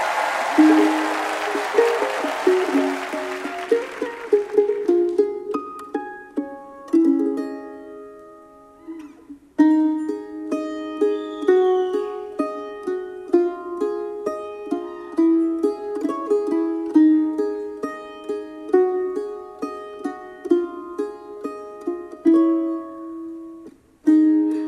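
F-style mandolin playing a slow melodic intro of picked single notes and chords that ring out, with a short pause about nine seconds in before the melody carries on. Audience applause fades out over the first few seconds.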